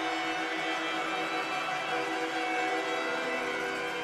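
Arena goal horn sounding a steady chord of a few held pitches in long blasts with brief breaks, over crowd cheering, signalling a home-team goal.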